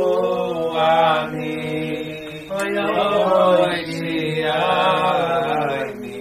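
Men's voices singing a slow Hasidic niggun, drawn-out notes in two long phrases with a short break about two and a half seconds in, fading near the end.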